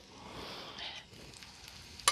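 Faint sizzling and light crackling of hot oil in an electric skillet.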